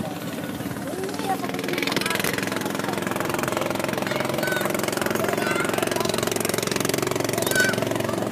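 A small boat engine running steadily with an even, fast-pulsing drone that gets louder about two seconds in.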